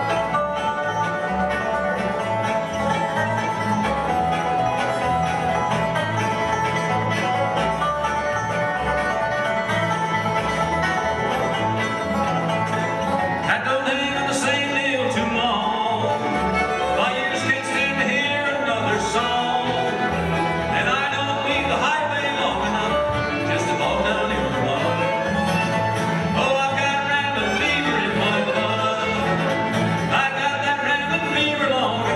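Live bluegrass band playing: fiddle, acoustic guitar, upright bass, dobro, mandolin and banjo together, the texture getting brighter about halfway through.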